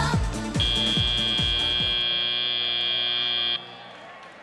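Field end-of-match buzzer at a FIRST Robotics Competition match: a steady, high electronic buzz starts about half a second in, holds for about three seconds, then cuts off suddenly. Arena pop music with a thumping beat plays underneath and stops about two seconds in.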